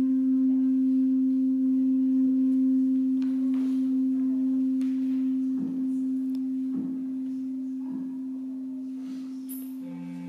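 Ambient background music: one held low tone with faint higher overtones, ringing like a singing bowl and slowly fading, with a new lower tone coming in at the end. A few faint short knocks and shuffles sit underneath.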